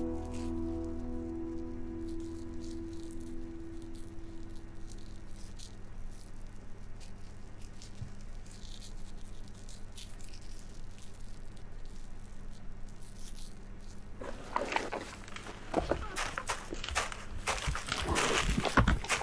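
Background music with held notes fades out in the first few seconds, leaving a faint steady hiss. In the last few seconds, a moose moving or feeding in the undergrowth makes irregular crackling and rustling that grows louder.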